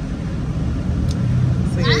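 Steady low rumble of an SUV's engine and tyres, heard from inside the cabin while it drives.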